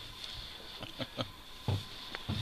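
A few light clicks and knocks of small objects being handled at a workbench, over a faint steady high-pitched whine.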